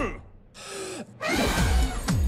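An elephant drawing a breath and then blowing hard to put out birthday candles: a breathy intake from about half a second in, then a long, loud rush of air in the second half.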